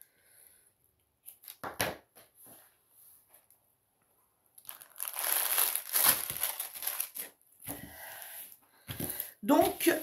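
Plastic crinkling and rustling as a diamond painting canvas with its plastic covering and bag of drill packets is handled: a few faint clicks, then a burst of crinkling about halfway through that fades to softer rustling.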